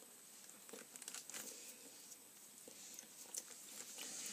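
Faint crunching and small crackles of a chocolate egg's shell being bitten and chewed, with a few quick clicks scattered through.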